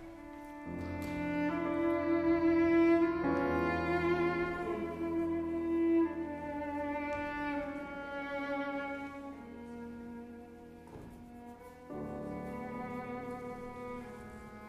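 Cello and Steinway grand piano playing a slow classical piece: long sustained bowed cello notes over the piano, the line moving to a new note every few seconds. It swells loudest early on, falls softer past the middle and rises again near the end.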